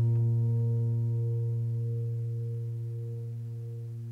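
A low piano chord, struck just before, held and slowly dying away.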